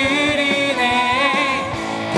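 Worship team singing a Korean praise song in several voices over acoustic guitar, with long held notes.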